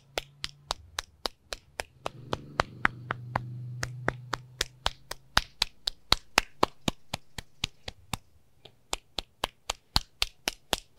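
Palm slapping the other hand and forearm in Tui Na-style self-massage: quick, even slaps about four a second, fainter for a moment near the end. A low steady hum swells and fades in the middle.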